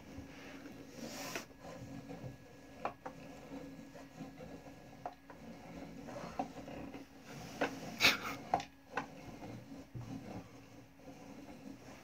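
Hand-turned wooden automaton mechanism working: faint wooden rubbing and creaking with scattered light clicks, and a few louder clicks about eight seconds in.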